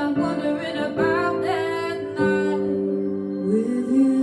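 A female singer's voice singing a wavering, sustained melodic line over soft piano accompaniment.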